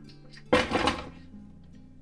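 A short burst of handling noise, about half a second long, a little after the start, as a digital thermometer is picked up. A faint steady background hum runs under it.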